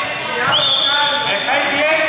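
Voices in a reverberant sports hall, with a high steady tone that rises briefly and then holds for over a second in the middle.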